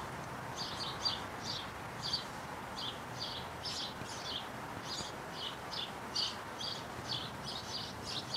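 A bird chirping over and over, two or three short, high chirps a second, over faint outdoor background noise.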